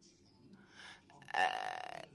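A voice gives a short, held 'ehh' of hesitation about a second and a half in. It sounds as one steady vowel and stops abruptly.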